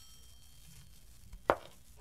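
A quiet gap between rings of a telephone bell, broken by one sharp knock about one and a half seconds in. The bell starts ringing again right at the end.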